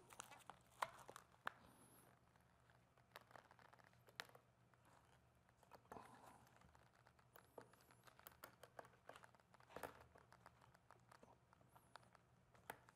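Faint, sporadic rustling and crackling of dry moss and fibrous fern backing being pressed and handled by hand, with scattered small clicks and taps, the sharpest about a second in and near ten seconds.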